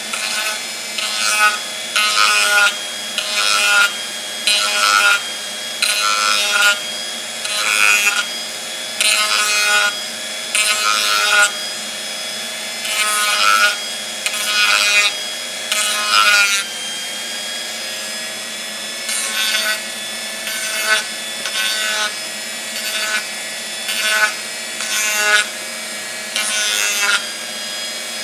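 Chicago Electric variable-speed rotary tool running steadily at its lowest speed setting, its bit grinding the corner of a Kydex holster in short repeated strokes about once a second, with a brief let-up about two-thirds of the way through.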